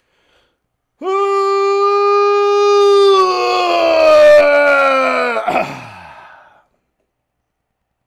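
A man's long, loud vocalised yawn as he stretches: a held high note for about two seconds, then sliding down in pitch and trailing off into breath.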